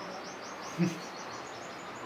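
A small bird calling: a rapid, even series of short, high notes, about six a second. A brief low voice sound comes about a second in.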